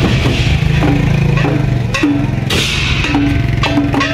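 Loud traditional Taiwanese procession drum-and-cymbal band: a large barrel drum and small drums beaten with sticks, with brass hand cymbals clashing. Short metallic ringing strokes run through the beat, and a cymbal crash swells up about two and a half seconds in.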